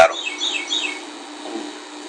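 A small bird chirping: a quick run of about five short falling notes in the first second, over a steady low background hum.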